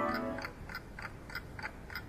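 Orchestral background music fading down, leaving a soft, regular ticking of about three clicks a second.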